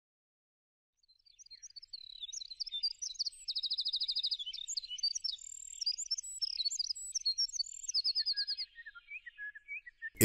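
Birds chirping and trilling, starting about a second in, with overlapping high calls and runs of fast repeated notes, fading out near the end.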